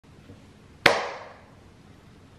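A single sharp hand clap about a second in, with a short ringing tail as it dies away.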